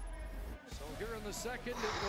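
Faint speech over background music, opening with a low bass swell in the first half-second.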